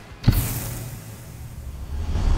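A logo-sting sound effect: one sudden hit with a whoosh about a quarter second in, dying away into a low rumble over the next second and a half.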